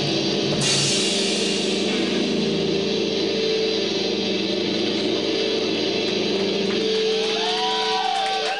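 A live rock band's loud, steady wash of distorted guitar and cymbals with droning held tones, freshly struck about half a second in. Wavering, gliding whines come in near the end.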